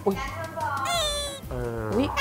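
A cat meowing, a high, drawn-out cry about a second in, dropped in as a comic sound effect over a man's speech.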